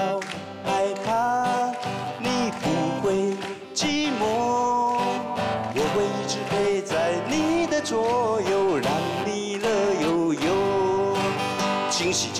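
A man singing a fast, upbeat Mandarin pop song while strumming an acoustic guitar.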